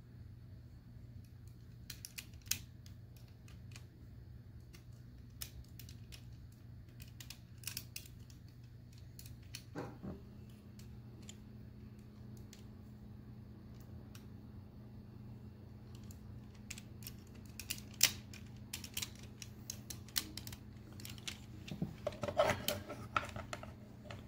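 Small plastic clicks and taps as a Transformers Generations Skullgrin action figure is handled and posed, its pickaxe and limb joints being fitted and moved. The clicks are scattered, coming more often in the second half, over a steady low hum.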